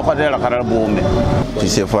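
A man talking: speech only, with no other sound standing out.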